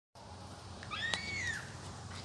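A single short animal call, well under a second long, that rises and then falls in pitch, with a sharp click during it.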